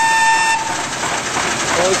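Steam whistle on a 1904 American steam fire engine blowing one steady high tone that cuts off about half a second in, over the steady hiss of the running engine.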